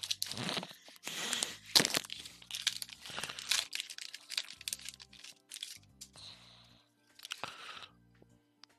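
A foil Pokémon booster pack wrapper crinkling and tearing as it is opened by hand, the crackling busiest in the first half, over faint background music.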